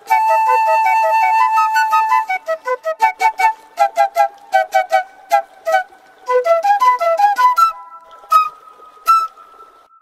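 Two Uzbek nay, transverse bamboo flutes, playing a duet: one holds a long note over the other's quick melody, then both play short, detached notes, ending on a held high note that fades.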